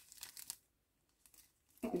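Quick, faint crinkly rustling of packaging being handled, stopping about half a second in.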